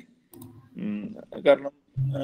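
A few short clicks shortly after the start, followed by a man's voice speaking indistinctly for about a second.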